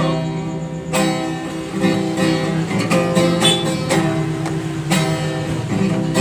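Music: an acoustic guitar strumming chords, a new strum roughly every second, with the chords ringing on between strums.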